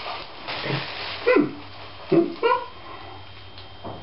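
A person's short nonverbal vocal sounds: a few brief calls, each falling in pitch, spread over a couple of seconds, with the faint crinkle of a plastic bag being handled.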